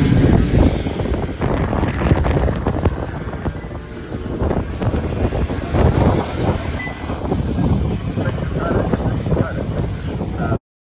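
Wind buffeting the microphone hard, with racing motorcycles passing on the track beneath it.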